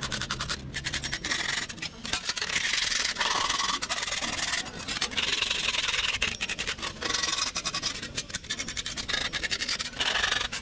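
A hand file rasping along the cut edge of a thin metal sheet, smoothing it in a run of quick strokes with a few short pauses.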